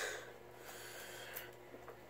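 A short breath out at the start, then faint rustling of paper and tape being handled, with a couple of small clicks.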